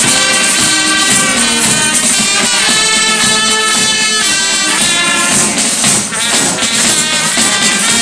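Live carnival band playing: saxophone and brass over a bass drum, with a tambourine jingling along.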